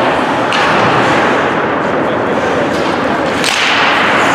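Ice hockey game sound at a rink: a steady wash of crowd and rink noise, cut by two sharp cracks of sticks or puck about half a second in and near the end.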